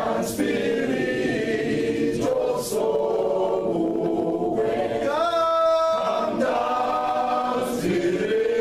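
A group of voices singing together without instruments, holding long notes with short breaks between phrases.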